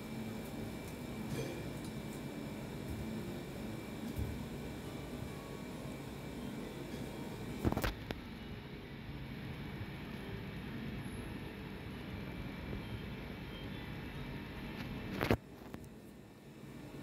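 Steady background noise with a faint constant hum, broken by two sharp clicks, one about halfway through and one near the end.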